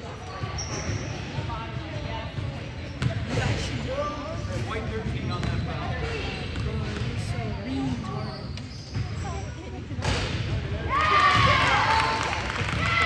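Basketball bounced a few times on a hardwood gym floor at the free-throw line, under scattered voices echoing in the gym. Near the end come sharp squeaks of sneakers on the hardwood as players move.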